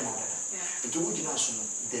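A man talking, with a constant high-pitched shrill drone underneath his voice.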